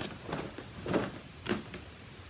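A cardboard advent calendar box being handled: about four short, soft knocks and rustles as a door is opened and a small tube is taken out.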